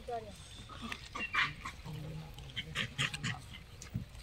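Gray langurs feeding on fruit: scattered crisp crunching and rustling a little over a second in and again near three seconds, opened by a brief animal cry, with a low voice murmuring underneath.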